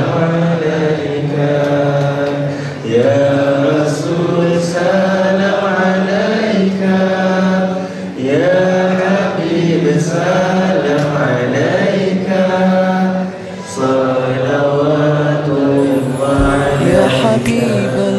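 Men's voices chanting together in a slow, drawn-out Islamic devotional chant with long held notes.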